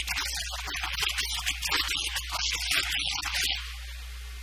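A man speaking in a lecture, over a steady low electrical hum and hiss in the recording.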